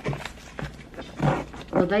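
Rustling and clatter of packaging being handled as skincare product boxes are taken out by hand, in a few short bursts, with a woman's voice starting near the end.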